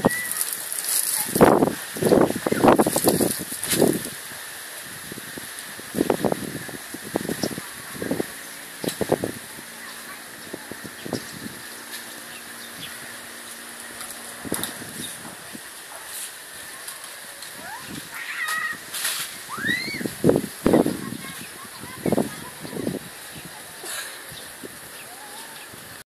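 People talking in short stretches, with a couple of quick rising bird chirps about three-quarters of the way through.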